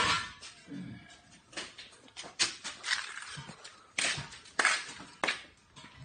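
Irregular light knocks and scuffs of handling and footsteps, about six spread across a few seconds, with a rustle at the very start as the phone is moved.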